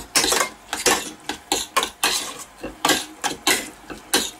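A metal spoon stirring potato mash in a stainless steel pot, scraping and clinking against the pot's sides and bottom in quick, repeated strokes, about three a second.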